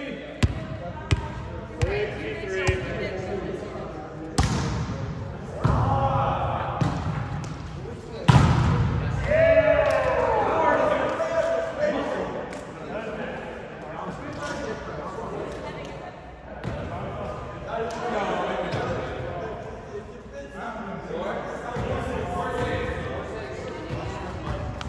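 A volleyball being struck by hand and bouncing on a gym floor during a rally: a series of sharp smacks, the loudest about eight seconds in, with players shouting and talking in a large hall.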